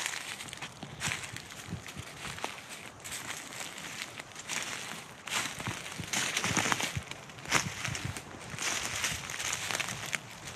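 Footsteps crunching through dry leaf litter and pine needles at a walking pace, a step about every second.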